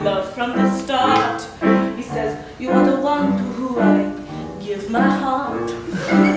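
Live musical theatre song: a woman singing over a pulsing piano accompaniment.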